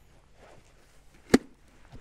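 A single sharp plastic click a little over a second in: a cover plate snapping into the peak mount on the side of an Arai Tour X5 helmet.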